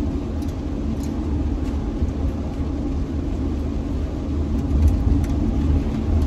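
Steady low rumble of engine and road noise inside the cabin of a cargo van driving along a road.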